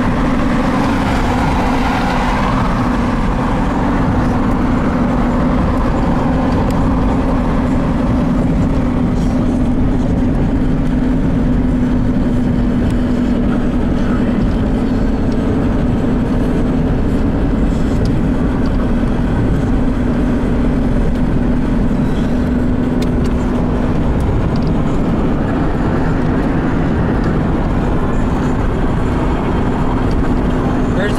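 Steady road and engine noise heard inside a moving car's cabin, a constant drone with a steady low hum throughout.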